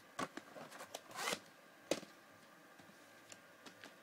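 VHS tapes and their plastic cases being handled: a few faint plastic clicks, a short scraping slide about a second in, and one sharp click just before the two-second mark.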